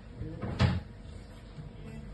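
A single dull thump about half a second in, the loudest sound here.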